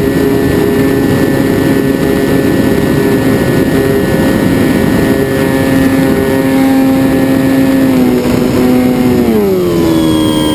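Extra 260 aerobatic plane's propeller engine running steadily under wind rush, filmed from on board. Its pitch drops sharply in the last two seconds as the engine slows.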